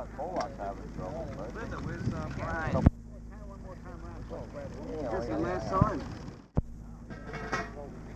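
Indistinct voices of several people talking over a steady low hum on the sound track. Two sharp clicks break in, about three seconds and six and a half seconds in.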